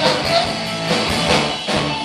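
A punk rock band playing live and loud, with electric guitars and a drum kit. A shouted vocal line ends just after the start.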